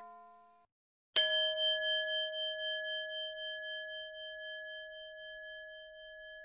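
A bell-like chime struck once about a second in, ringing on with several clear tones that fade slowly.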